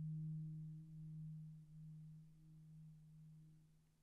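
Marimba sounding one soft, sustained low note with its octave above, slowly fading and dying away near the end.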